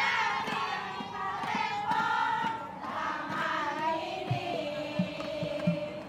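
A group of women singing their team cheer together in unison, loud and continuous, with a few low thumps in the second half.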